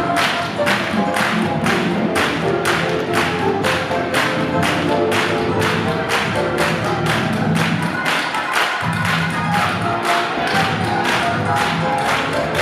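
A group clapping hands in unison in a steady rhythm, about three claps a second, along with gospel music.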